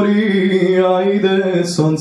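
A man singing unaccompanied, holding a long, slightly wavering melismatic phrase, with a short hissing consonant or breath near the end.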